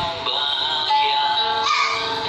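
A man singing with guitar accompaniment, holding one long, steady note about a second in.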